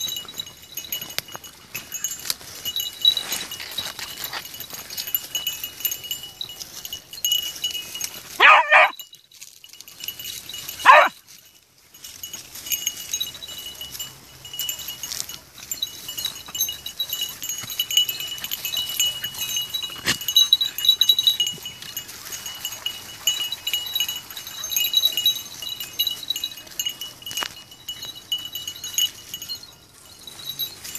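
Small bells on hunting dogs' collars jingling on and off as beagles work through scrub. A dog gives two short, loud yelps, about eight and eleven seconds in.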